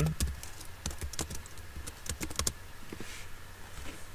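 Computer keyboard typing: quick runs of keystrokes with short pauses between them.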